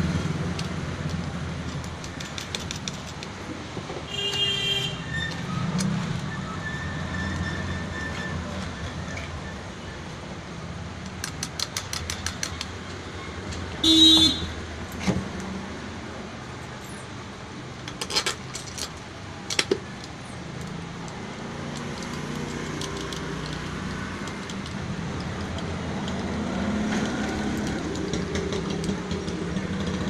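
Steady rumble of road traffic with two short horn toots, the louder one about halfway through, and a few light metallic clicks and clinks from handling the motor parts.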